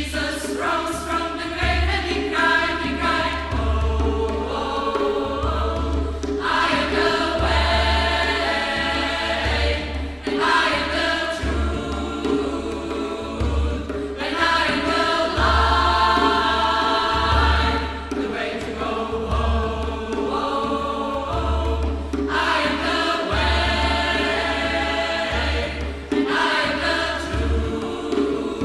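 Mixed choir of men and women singing a slow devotional song in harmony, phrase after phrase with short breaks between.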